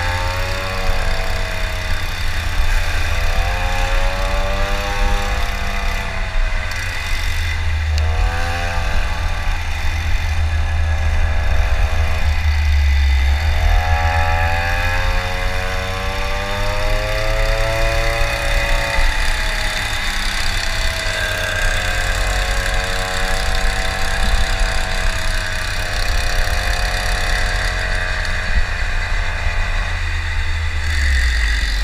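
A stand-up scooter's motor running while riding, its pitch rising and falling several times as the scooter speeds up and slows. Heavy wind rumble on the microphone throughout.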